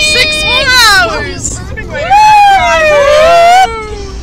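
Teenage girls' voices squealing and shrieking in high, sliding pitches, then one long, very loud scream that slides down in pitch from about two seconds in. Underneath is the steady low hum of a car on the road, heard from inside the cabin.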